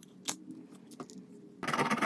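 A few light clicks and taps of small phone parts being handled. About three-quarters of the way in, a louder, rapid scratchy rubbing starts suddenly, as a fingertip presses and smooths adhesive film onto the phone's frame.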